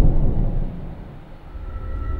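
The rumbling tail of a loud, deep boom, fading over the first half second and leaving a low rumble. High ringing tones come in right at the end.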